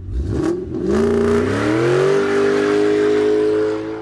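Car engine revving up as a logo sound effect: its pitch climbs over the first two seconds, then holds high and steady before easing off near the end.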